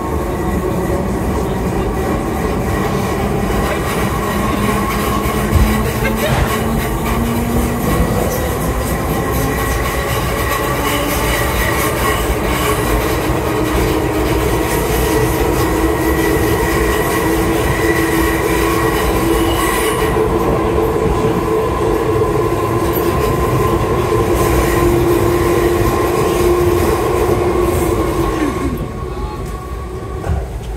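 Merseyrail Class 508 electric multiple unit running, heard from inside the carriage: a loud, steady rumble and rattle of the train under way, with a whine that holds through most of the ride. Near the end the whine falls in pitch and the noise drops.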